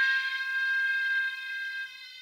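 A held piano sample heard through an EQ that cuts away its main low range and leaves only its upper frequency region, so it sounds thin, bright and like a different instrument. The tone starts just before and fades slowly, its lowest partial dropping out near the end.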